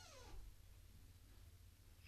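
Near silence, room tone only. A faint falling tone dies away just after the start.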